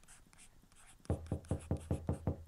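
Faint scratching like a pen writing on paper. About halfway through, a quick, even run of loud knocks begins, about five a second, as a knock at a wooden door.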